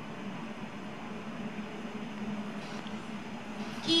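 Indoor ice rink ambience: a steady low hum and hiss, with faint scrapes of a figure skater's blades on the ice.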